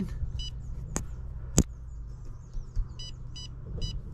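Touchscreen control panel of a ThermoTec heat pump beeping as an unlock code is keyed in: one short beep, then three quick beeps near the end. Two sharp clicks fall in between, over the unit's steady low hum.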